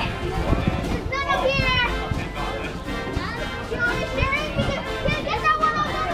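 Children's voices calling and chattering at play, some high-pitched squeals, over background music.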